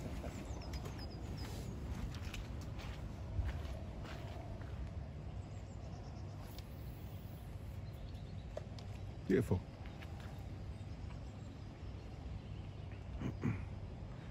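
Quiet outdoor background: a steady low rumble of noise, broken by a single short spoken word about nine seconds in and a faint murmur near the end.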